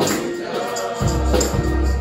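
Gospel choir singing with live band accompaniment and a tambourine jingling. A deep bass note comes in about a second in and holds.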